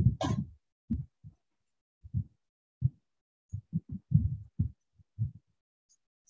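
About a dozen short, muffled, low-pitched bursts cutting in and out, with dead silence between them, over a video-call microphone that gates the sound on and off.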